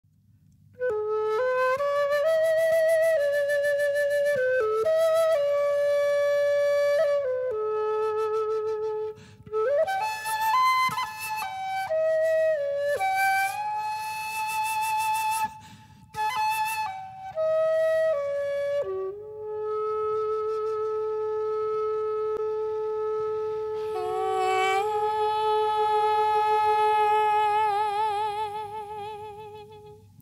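Solo flute playing a slow melodic introduction to a Chinese folk song: one melody line in phrases with short breaths between them. It ends on a long held note that gains vibrato and fades away near the end.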